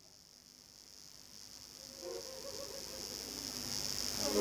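A steady, high insect buzz, like crickets or cicadas, fades in from silence. Faint low musical tones come in about two seconds in.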